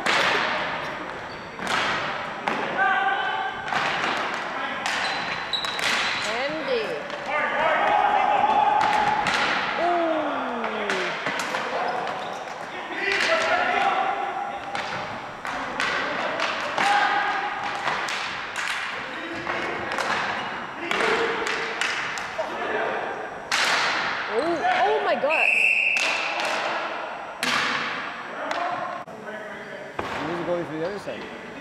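Ball hockey play on a gymnasium floor: repeated sharp cracks of sticks hitting the ball, echoing in the hall, with players shouting. A short whistle blast sounds near the end as play stops.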